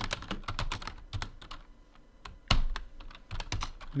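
Typing on a computer keyboard: a run of irregular keystrokes, a brief pause about halfway through, then one louder key strike and a few more keystrokes.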